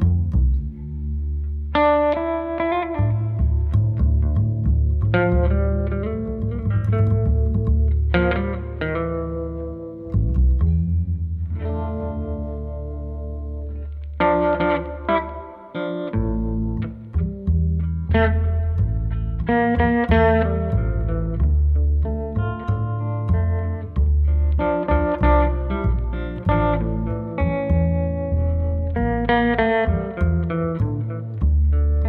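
Instrumental Cuban surf tune: a Guyatone electric guitar playing the melody through a modded Filmosound projector amplifier with a reverb unit, over a plucked upright double bass line.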